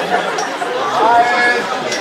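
Speech only: people talking on stage over microphones, one voice drawing out a vowel about a second in.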